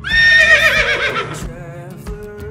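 A horse whinny sound effect: one loud, quavering whinny that falls in pitch over about a second and a half, over quiet background guitar music.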